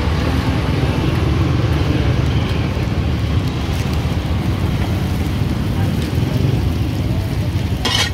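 Mutton qeema and naan sizzling in oil on a large flat iron tawa, over a steady low rumble.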